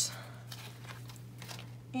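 Faint rustling and crinkling of paper sticker sheets being handled, over a steady low hum.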